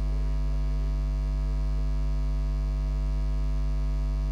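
Steady electrical mains hum from the sound system, a low drone with a stack of buzzy overtones that holds at one level throughout, with no voices over it.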